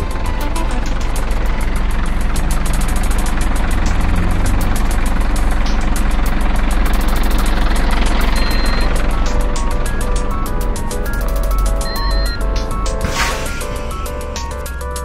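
Electronic music: a dense, noisy wash over steady deep bass, with rapid ticking beats. About two-thirds of the way in, pitched synth notes come back, and a short rushing swell comes near the end.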